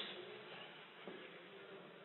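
Faint, steady hiss and hum of the room and sound system, with the echo of the last spoken word dying away at the start.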